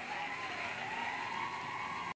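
A studio audience cheering over music, heard through a television's speaker.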